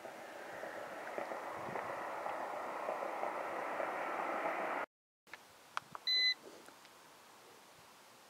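A rushing noise grows steadily louder for about five seconds and then cuts off. About a second later come a few sharp clicks and a short electronic beep from a handheld RF field meter's button, the loudest sound here.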